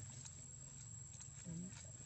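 A single short, low, voice-like call about one and a half seconds in, from a monkey or a person, over a steady low hum, a thin high steady tone and faint ticks.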